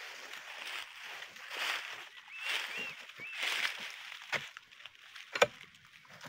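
Footsteps rustling through dry grass and palm fronds, coming in swells about once a second. There are a few faint short chirps in the middle and a couple of sharp snaps or knocks near the end.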